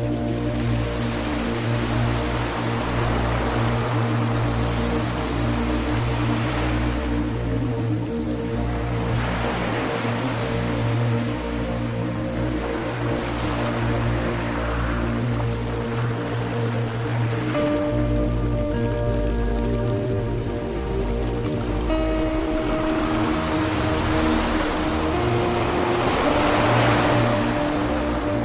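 Slow ambient music: sustained synth pads over a low bass drone, with the held chords shifting slowly. Washes of ocean surf rise and fall over the music every several seconds.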